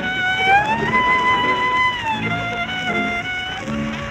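Solo violin playing a slow melody. It slides up into a long held note about a second in and steps to new notes about halfway through, over soft, steady accompaniment.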